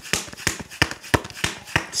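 A deck of tarot cards being shuffled by hand: a quick, irregular run of sharp card taps and snaps, about four or five a second.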